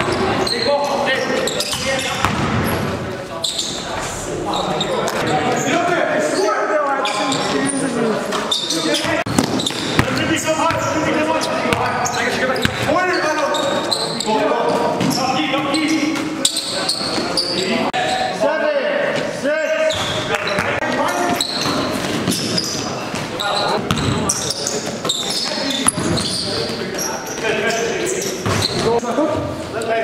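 Basketballs bouncing on a gym floor, with players' voices and calls throughout, echoing in a large gymnasium.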